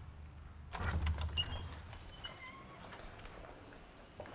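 A wooden door being opened: a click and push about a second in, followed by a few faint, short hinge squeaks.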